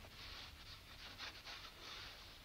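Near silence: the faint steady hum and hiss of an old film soundtrack, with a few soft rustles.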